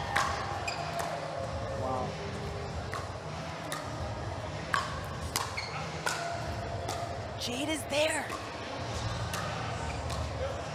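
Pickleball rally: paddles striking the hard plastic ball in a string of sharp pops, roughly one a second, over a murmur of voices.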